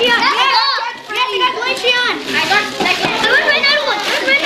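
Excited children's voices, high-pitched and overlapping, calling out and squealing with no clear words.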